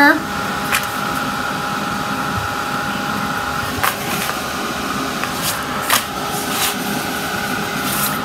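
Handheld electric hot-air dryer running steadily, blowing over fabric to dry a coat of crackle paste. A faint steady whine drops away about four seconds in, and there are a few light clicks.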